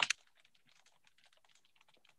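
Faint, quick, irregular typing on a computer keyboard, heard through a video call, after a brief loud burst of noise right at the start.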